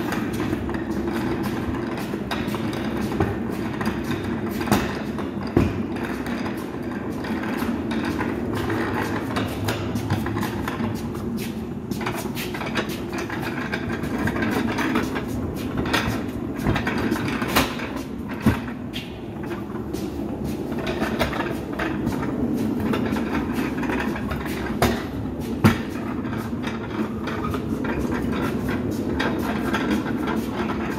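Small hard wheels of a loaded plywood dolly rolling over a concrete floor: a steady rumble with a few sharp knocks.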